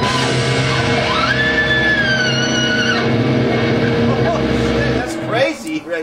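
A recorded rock track played back, led by an electric guitar through a talk box: a vocal-like note slides up, holds and bends down over the band backing. The music cuts off about five seconds in, and laughter follows.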